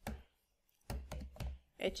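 Typing on a computer keyboard: a single keystroke at the start, then a quick run of several keystrokes with dull thumps about a second in.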